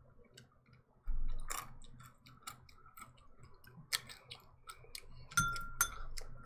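Eating salad close to the microphone: scattered crisp crunches and small clicks of chewing, with a dull thump about a second in and another near the end.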